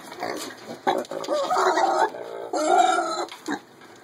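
Baby miniature pigs calling while feeding: two drawn-out squealing calls, the first about a second and a half in and the second after a short gap, with short clicks in between.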